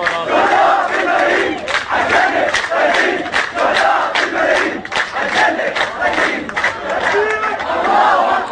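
A crowd of protesters chanting together in a loud, rhythmic call, with hand clapping about three times a second.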